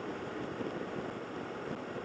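Steady wind rush over the microphone and road noise from a motorcycle cruising at an even speed, with its engine running underneath.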